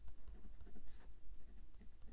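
A pen writing on planner paper: short, irregular scratching strokes as figures are jotted down, over a low steady hum.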